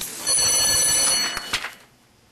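A bell rung to mark the close of the session: a bright ringing with several high, steady overtones, lasting about a second and a half before dying away.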